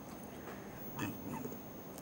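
A pause between speech: faint room hiss with a thin, steady high-pitched whine, and a brief faint sound about a second in.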